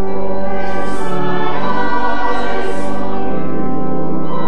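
Church congregation and choir singing a hymn together with organ accompaniment, in sustained chords.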